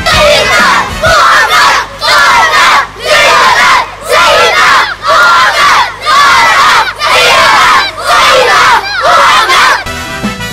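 A crowd of boys chanting a slogan in unison, very loud, in rhythmic shouts about once a second.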